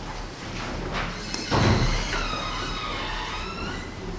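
A room full of people sitting back down on chamber seats: shuffling, with a thump about a second and a half in, then a drawn-out creak or squeak lasting about a second and a half, over a low hum.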